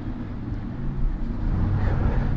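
A steady low hum and rumble of background noise.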